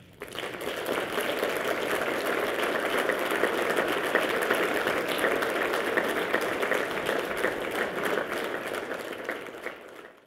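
Audience applauding steadily, the clapping starting at once and fading near the end.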